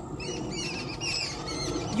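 Small birds chirping outdoors: a quick, continuous run of short high chirps.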